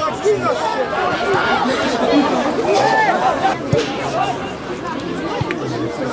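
Several voices shouting and calling over one another on a football pitch during open play, with a couple of short knocks partway through.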